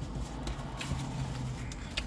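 Closed-mouth chewing of fried chicken, with a few faint clicks, over the steady low hum inside a car.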